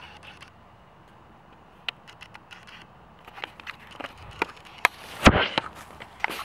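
Handheld camera handling noise: scattered clicks and knocks, growing more frequent, then a louder scraping rub near the end as fabric brushes over the microphone.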